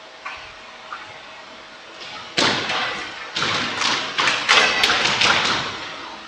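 A fast, irregular run of about a dozen sharp knocks over about three and a half seconds, starting a little before the middle: squash ball strikes off rackets and walls in a neighbouring court.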